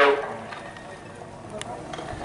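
A race announcer's voice finishing a word, then low steady outdoor background noise with one faint click about a second and a half in.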